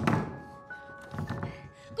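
Hands thumping on a closed door: a loud thud at the start, then a few weaker knocks about a second later, under background music.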